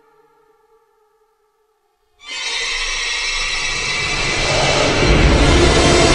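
Dark soundtrack music: a ringing tone dies away to silence, then about two seconds in a loud, dense noisy swell starts abruptly and keeps building, with a deep low rumble growing in near the end.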